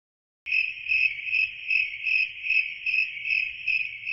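Cricket chirping sound effect, a steady pulsing chirp about two and a half times a second that starts suddenly about half a second in, out of dead silence.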